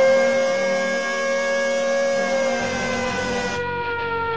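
Air-raid style siren sound effect, sounded as the stream's alarm for a big card pull. It holds one steady pitch, then slowly slides down in pitch through the second half.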